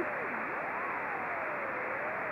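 Hiss of receiver noise from a Yaesu transceiver in CW mode, with the faint beat note of a −144 dBm test carrier, amplified by a low noise preamplifier, that is still audible above the noise. As the tuning knob is turned, the tone slides down in pitch, rises, then falls again.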